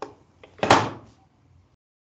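A couple of sharp clicks followed by a louder thud about two-thirds of a second in, heard through a video-call microphone.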